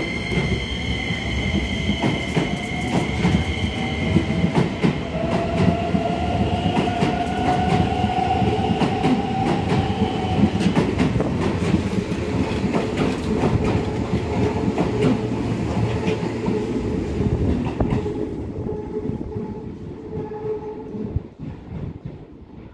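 Keisei 3100 series electric train pulling out along the platform: the traction motors whine, one tone rising in pitch as the train gathers speed, over a low rumble and wheels clacking on rail joints. It fades away near the end as the last car leaves.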